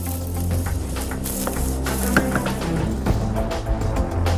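Background music with a sustained low bass and steady held notes.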